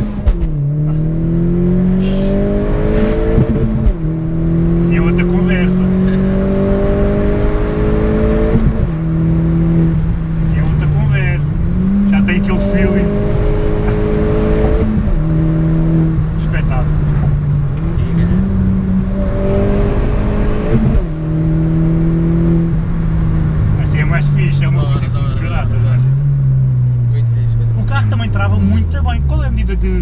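Opel Corsa OPC's 1.6 turbo four-cylinder heard from inside the cabin, accelerating with its exhaust cut-out valve open ahead of the catalytic converter. The engine note climbs and drops back at each shift, several times over, then falls away to low revs near the end.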